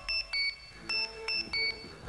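A run of short, high electronic beeps alternating between two pitches, like a phone tone, in a quiet break in a pop song.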